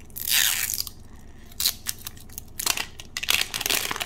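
Clear plastic wrapper being torn and peeled off a Mini Brands capsule ball. A loud rip comes just after the start, then the plastic crinkles and crackles in short bursts as it is pulled away and bunched in the hand.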